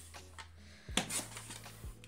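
Amazon Basics sliding paper trimmer: the blade head is drawn down the rail, cutting through greeting-card stock, with small clicks and one sharp click about a second in.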